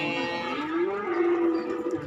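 Cattle mooing: one long moo that glides up in pitch about a second in, then holds steady and stops near the end.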